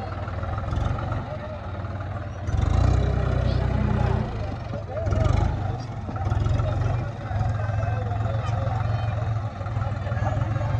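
John Deere tractor's diesel engine working hard under load as it pulls on a tow rope, revving up loudly twice, first for over a second about a third of the way in and then briefly about halfway through.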